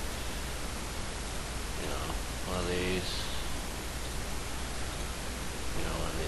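Steady hiss of recording noise, with a brief murmur from a man's voice about halfway through.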